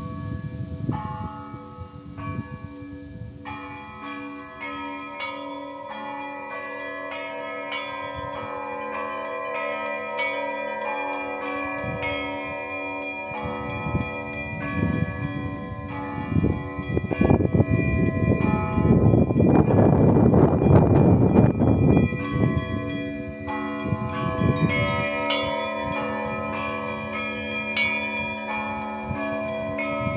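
Russian Orthodox church bells ringing a peal (perezvon): many bells of different pitches struck in a running pattern, each note ringing on. The strikes are sparse for the first few seconds, then thicken and grow loudest around the middle.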